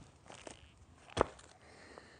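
A single sharp wooden knock about a second in, as a sawn section of log is set down on wood, with light rustling of handling before it.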